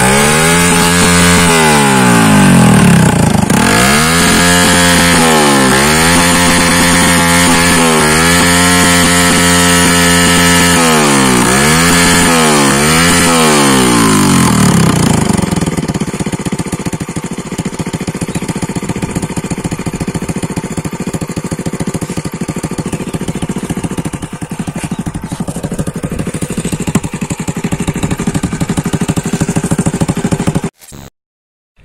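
Bajaj CT 100 single-cylinder four-stroke motorcycle engine, breathing through a tall upright tractor-style exhaust stack, revved up and down by hand about six or seven times, then dropping back to a lower, steady idle about halfway through.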